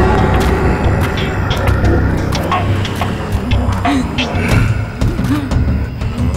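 Tense dramatic background music: a deep sustained low drone with scattered sharp clicks and short sliding tones over it.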